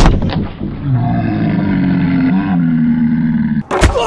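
A cinder block slammed down onto the end of a wooden board: a loud crack and a second knock right at the start. Then a man's long, pained yell, held for about three seconds, and another loud thud near the end.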